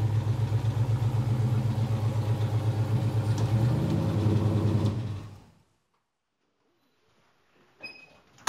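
Built 350 (bored to 355) small-block Chevy V8 with headers idling high on a cold engine, with an even pulsing exhaust note. About five seconds in it dies away over half a second, as the engine is switched off.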